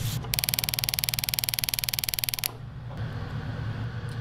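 Spark-timer spark gap firing: a rapid, even train of sharp electric snaps, about twenty a second, lasting about two seconds and then stopping.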